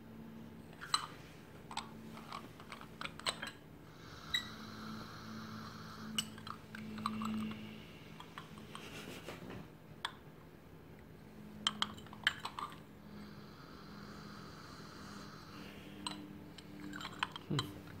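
Scattered light clicks and clinks of small porcelain tea ware being handled and set down on a wooden tea tray, with two long, soft sniffs as the warmed tea leaves are smelled.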